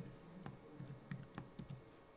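Computer keyboard being typed on: a few separate, faint key taps.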